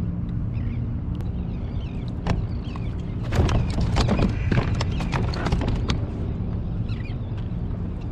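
A hooked halibut being landed into a plastic kayak: a flurry of slaps, knocks and splashes from about two seconds in until about six seconds in, over a steady low hum.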